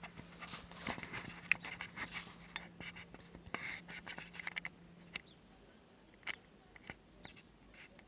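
Faint handling noise from a handheld camera being turned around inside a car: irregular light clicks and scrapes, thickest in the first five seconds and sparse after, over a low steady hum that stops about five seconds in.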